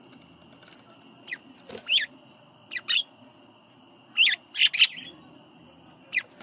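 Budgerigars chirping: about eight short, sharp calls, each sweeping downward, in clusters around two, three and four-and-a-half seconds in. A faint steady high whine runs underneath and stops about five seconds in.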